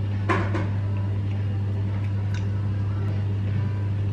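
Steady low electrical hum of a running kitchen appliance, with a few short crisp clicks of someone biting and chewing a flaky puff pastry early on.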